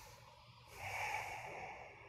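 A person taking a deep breath: a long, audible exhale that swells about a second in and fades within about a second.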